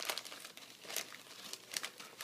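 Paintbrushes scrubbing and dabbing paint onto large sheets of paper, with the paper rustling and crinkling under hands: a run of irregular scratchy strokes.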